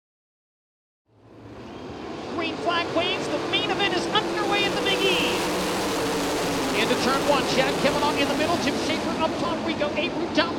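World of Outlaws 410 sprint cars racing in a pack, several V8 engines running hard and rising and falling in pitch on and off the throttle. The sound fades in about a second in.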